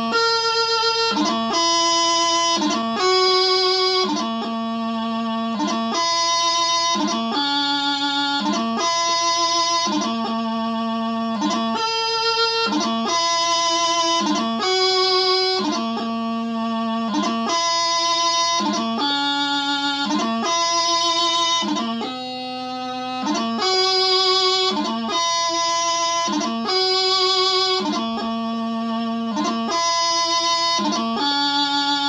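Bagpipe practice chanter playing the doubling of a piobaireachd variation: a slow, continuous melody of steady held notes, about one a second, each broken from the next by quick grace notes.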